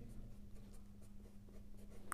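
Faint scratching of a felt-tip marker writing a short line of numbers on paper, with a faint steady hum underneath.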